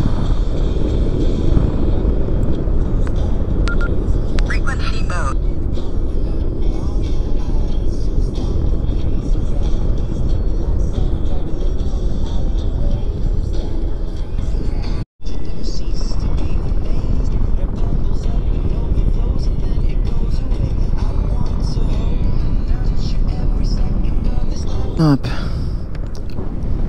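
Steady low wind rush from air streaming past the camera microphone of a paraglider in flight. It cuts out for an instant about halfway through.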